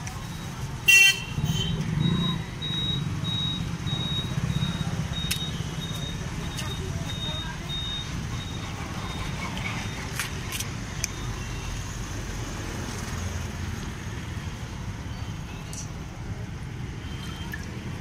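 Roadside traffic ambience: a steady low rumble of passing vehicles, with a short loud horn toot about a second in. A faint high beep then repeats a few times a second for several seconds.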